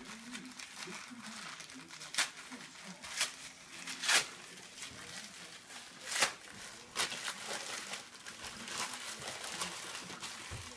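Plastic packaging on a dog's ball launcher crinkling and crackling as it is handled, with sharp crackles at about 2, 3, 4, 6 and 7 seconds in.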